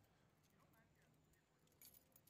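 Near silence: faint outdoor background with a faint distant voice about halfway through, and a brief rustle near the end.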